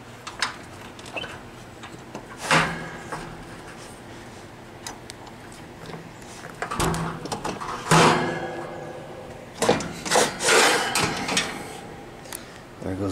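A window screen being slid open in its frame: a series of scrapes, knocks and rattles, with one loud scrape about two and a half seconds in and a busier run of scraping from about eight to eleven seconds.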